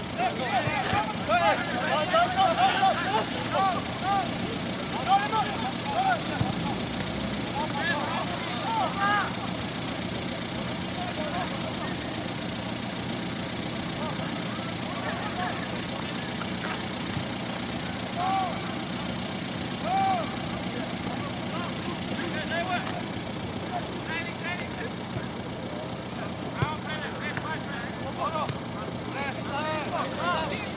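Distant shouts and calls from players on a football pitch, coming in short scattered bursts over a steady low background rumble.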